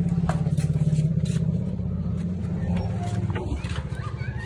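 A small motorcycle engine idling with a steady, evenly pulsing beat, getting slightly quieter near the end.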